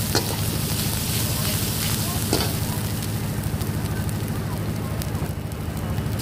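Chopped garlic sizzling in hot oil in a wok over a steady gas-burner roar, stirred with a metal ladle that scrapes against the pan twice.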